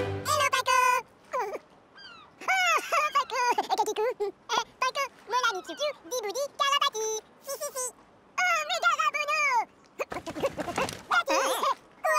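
High-pitched cartoon voices chattering back and forth in a made-up nonsense language, in short lively phrases. About ten seconds in there is a brief noisy sound effect.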